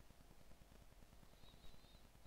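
Near silence: faint room tone with a low hum, and a faint, brief high-pitched squeak near the end.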